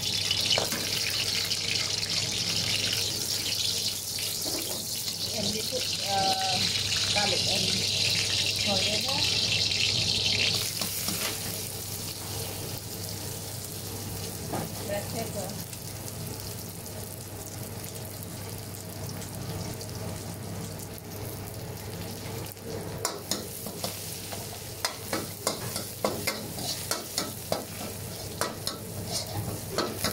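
Garlic and black pepper sizzling in hot oil in a metal wok. The hiss is loud for about the first ten seconds, then drops abruptly to a quieter sizzle. Over the last several seconds the metal ladle scrapes and clicks against the wok as it stirs.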